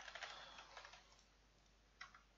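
Faint computer keyboard typing, a quick run of key taps that fades out about a second in, followed by near silence.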